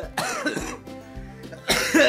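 A young man laughing in short bursts, loudest near the end, over background music.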